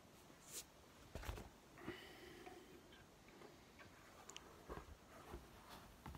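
Near silence with a few faint clicks and light knocks of small objects being handled at a fly-tying bench, the strongest in the first two seconds and smaller ones near the end.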